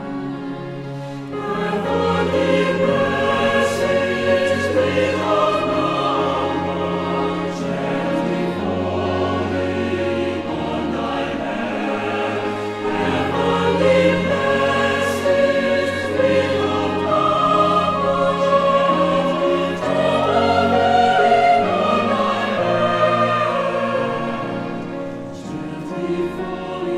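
Mixed choir of women's and men's voices singing a hymn in long held chords, swelling louder about two seconds in and softening near the end.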